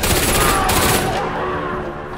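A burst of rapid automatic rifle fire, many shots in quick succession, lasting about a second and then stopping.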